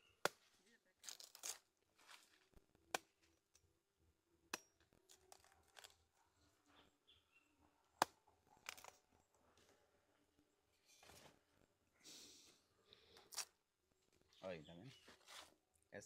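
A knife striking the hard husk of a cacao pod to split it open: a handful of sharp, separate knocks spread over the seconds, the loudest about eight seconds in, with short rustles between them.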